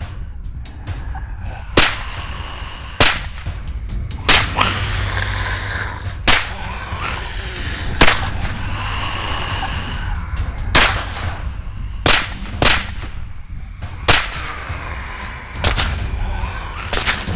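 Suppressed AR-15 rifle firing single shots, about ten of them spaced unevenly, over a background music track.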